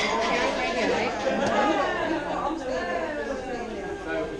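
Several people talking at once: overlapping, indistinct chatter in a large room.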